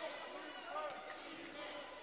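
A basketball dribbled on a hardwood court, a few faint bounces over quiet gym background noise.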